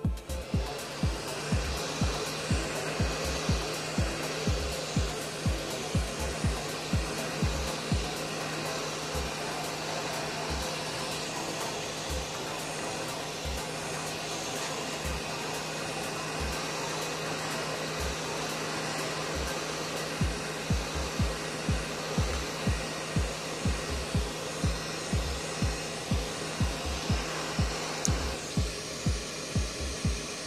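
Hot air gun of an SMD rework station blowing steadily, a rushing hiss with a low hum, preheating a tablet circuit board. The hiss drops away a couple of seconds before the end. Background music with a steady thumping beat about twice a second throughout.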